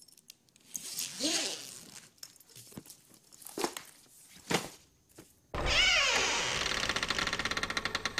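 Horror-film soundtrack: soft rustling and a few separate taps, then about two-thirds in a sudden loud burst with a falling glide and rapid fluttering pulses that keeps going.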